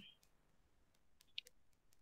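Near silence with a few faint clicks in the second half, the clearest about one and a half seconds in.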